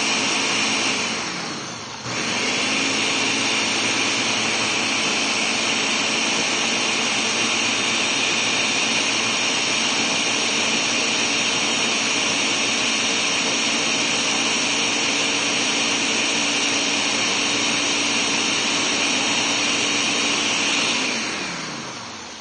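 Ninja Professional 1100-watt countertop blender running steadily, puréeing chunks of cooked carrot and onion in broth into a thick soup. About two seconds in the motor briefly winds down and starts up again, and near the end it winds down to a stop.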